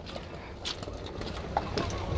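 Footsteps crunching on gravel as someone walks, a few faint steps, over a low rumble of wind on the microphone.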